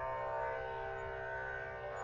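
Soft, steady instrumental drone of devotional background music, sustained tones holding without change between chanted lines.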